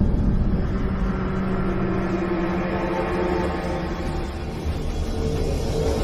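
Logo-intro sound effect: a deep rumbling drone with several held tones under it, continuing steadily after a sudden hit.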